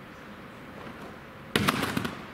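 Low room noise, then about one and a half seconds in, a sudden loud clattering burst of several quick impacts from a gymnast's take-off on a trampoline bed and springs, lasting about half a second.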